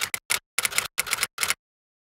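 An outro sound effect: a quick run of sharp, shutter-like clicks that ends about a second and a half in.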